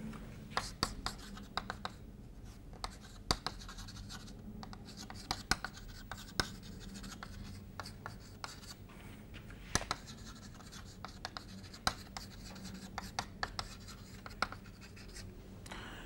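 Chalk writing on a blackboard: faint scratching of chalk strokes with irregular sharp taps and clicks as each letter is started.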